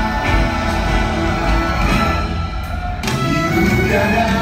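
Live orchestra with strings and a band playing an instrumental passage between sung lines.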